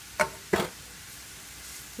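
Two short knocks of kitchenware, about a third of a second apart, as shredded butternut squash is handled in a cast iron skillet, followed by a faint steady background.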